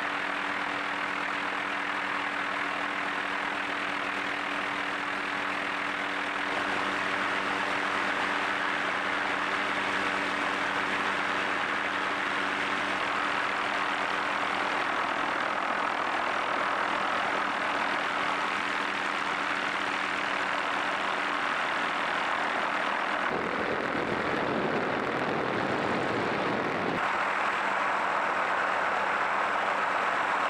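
Helicopter heard from aboard: a steady engine and rotor hum with a constant rushing noise. For a few seconds near the end the hum drops away and a deeper rushing noise takes over, then the hum returns.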